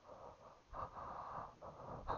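A person breathing close to the microphone: a soft, noisy breath about three-quarters of a second in and a shorter one near the end.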